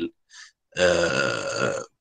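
A man's voice holding one drawn-out 'uhh' hesitation sound, a single steady vowel about a second long, after a short breath.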